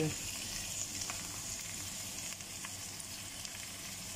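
Pork trotters and sliced shallots sizzling steadily in oil in a nonstick pan as they are sautéed, with a few faint ticks.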